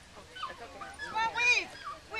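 A dog giving a few short, high-pitched calls, the loudest about a second and a half in.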